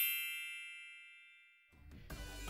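A bright, bell-like chime with several ringing tones, fading away over about a second and a half; a logo sound effect. Low background music begins near the end.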